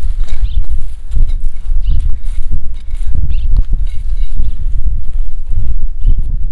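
Hand digging tool scraping and knocking into dry soil around a plant's root in irregular strokes, with wind buffeting the microphone as a heavy, uneven rumble.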